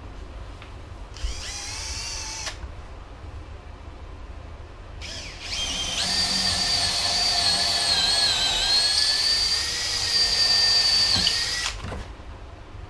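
Cordless drill boring up into a plywood substrate. It gives a short spin about a second in, then a longer run from about five seconds in: the whine rises in pitch, holds steady with a brief dip, and stops just before the end.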